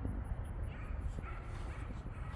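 Dogs barking faintly, a few short barks in the second half, over a low outdoor rumble.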